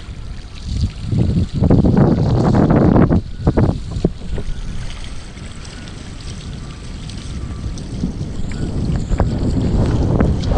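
Wind buffeting the microphone over the rush of water as a SUP hydrofoil board rides open-ocean swell. The gusts are loudest in the first few seconds, ease off in the middle and build again near the end.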